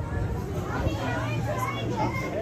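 Indistinct voices of people chattering, over a steady low hum.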